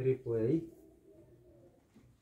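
A brief two-part sound from a person's voice, a low murmur like "uh-huh", in the first half second.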